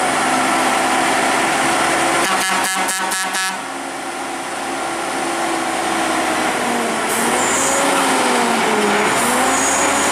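Volvo FM tractor unit's diesel engine labouring up a steep winding climb under a heavy crane load. About two and a half seconds in there is a brief rapid clatter, after which the engine note drops for a moment before building again.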